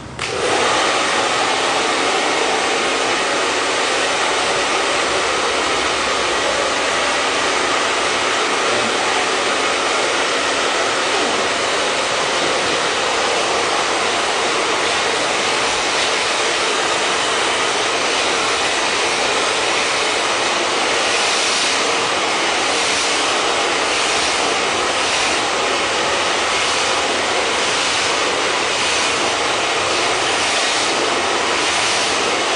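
Handheld hair dryer switched on just after the start and blowing steadily on wet hair. In the last third the sound rises and falls about once a second as the dryer is worked over a brush.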